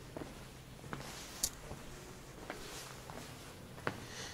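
Footsteps on flagstone paving, a few short, irregular scuffs and taps about half a second to a second apart, with one sharper click about a second and a half in.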